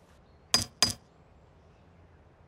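Two quick, light metallic taps about a third of a second apart, each with a brief high ring: a small tool tapping a concrete block to test it, a cartoon sound effect.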